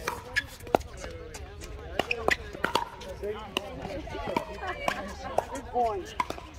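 Pickleball paddles striking the hard plastic ball during a rally: sharp pops at irregular intervals, several a second at times.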